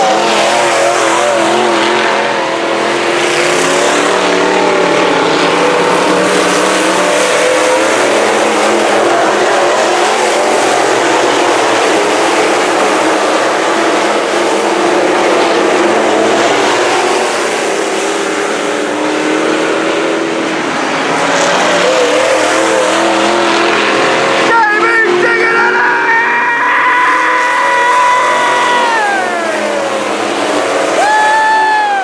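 A pack of IMCA SportMod dirt-track race cars running at speed on the oval, their V8 engines blending into a continuous wavering drone. About twenty-five seconds in, one car's engine comes close and rises in pitch, then falls away as it passes.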